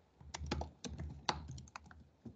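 Computer keyboard being typed on: a quick, uneven run of faint key clicks, about eight strokes.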